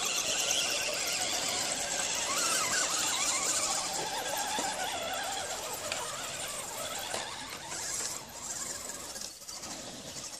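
High-pitched whine and squeal from Axial SCX10 RC crawler trucks with Holmes Hobbies motors driving, the pitch wavering as the motors change speed, getting somewhat quieter over the last few seconds.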